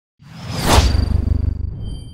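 Logo-reveal sound effect: a whoosh that peaks just under a second in over a low rumble, fading out as a thin high ringing tone lingers.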